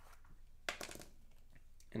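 Small screw-top jar of shimmer paste being twisted open: a brief clicky scrape of the lid about two-thirds of a second in, then faint ticks near the end.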